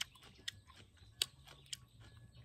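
A few faint, sharp clicks at irregular intervals, about four in two seconds, over a steady low hum: mouth sounds of chewing the last of a crisp cucumber dipped in chili salt.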